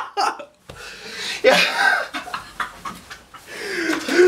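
A man gasping and panting in short breathy bursts, with bits of laughter.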